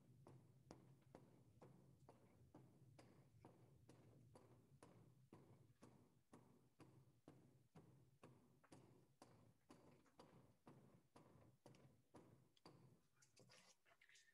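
Carving axe hewing out the hollow of a wooden bowl blank: faint, evenly spaced chops, about two a second.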